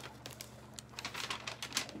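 Faint, irregular small clicks and light rustles of hands handling packaging, over a faint steady low hum.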